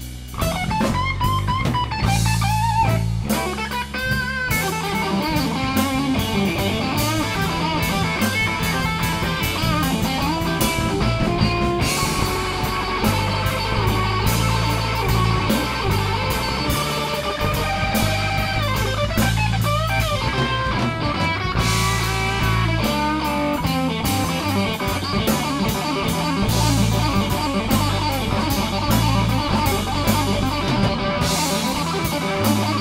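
Live blues band playing an instrumental passage without vocals: electric guitar over bass guitar and a drum kit.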